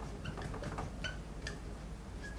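Dry-erase marker writing on a whiteboard: a string of faint ticks and brief squeaks as the letters are stroked out.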